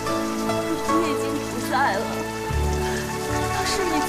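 Steady rain falling, mixed with slow background music of held notes, a deep bass note entering a little past halfway.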